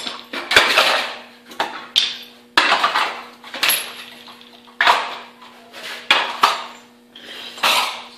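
A sand-casting mold being broken open: about ten sharp metallic knocks and clatters at irregular spacing as the flask is struck and the sand and casting are knocked loose onto a concrete floor.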